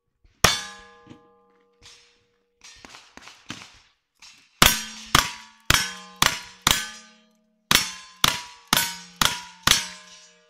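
Rifle shots fired at steel targets, each crack followed by the metallic ring of the struck plate. One shot comes just after the start, then a few small knocks, then a quick string of ten shots about two a second, with a brief pause midway.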